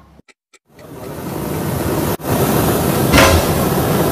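A loud, steady rushing hiss of a kitchen fire. It swells up after a moment of near silence, cuts out for an instant about two seconds in, and flares louder a little past three seconds.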